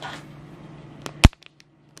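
Low room noise, then a single sharp click about a second in, after which the sound cuts off to dead silence, as at an edit cut.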